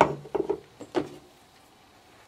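A sharp knock, then three lighter knocks and clicks within the first second, as of a small hard object being handled or set down.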